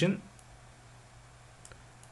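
A few faint, isolated computer mouse clicks over a low steady hum.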